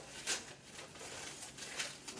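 A few faint rustles and light clicks of things being handled in a kitchen, the clearest about a third of a second in and near the end.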